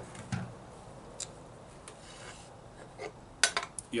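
Hands handling a pepper pod close to the microphone: a few faint clicks and light rubbing, with a short cluster of sharper clicks near the end.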